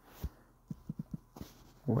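Light taps of a finger on a phone's touchscreen keyboard, typing an answer. One dull tap comes first, then four quick light taps about a second in.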